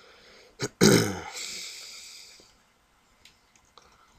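A person's throat sound close to the microphone: a short sharp burst about half a second in, then a louder, low-pitched throaty burst about a second in that fades out over the next second and a half.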